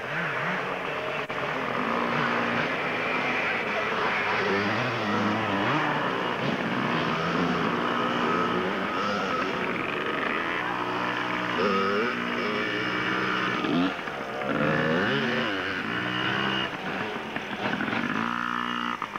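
Yamaha PW50 mini dirt bike's small two-stroke engine, revving up and down repeatedly as it pushes through mud and water, with voices and laughter over it.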